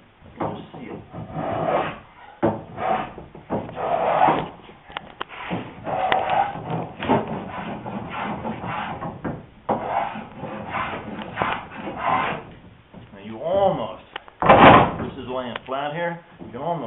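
Small hand plane shaving a wooden sailboat rail in short strokes, about one or two a second, with one louder, longer stroke near the end. The plane is cutting the rail's bevel so that it sits flat against the hull.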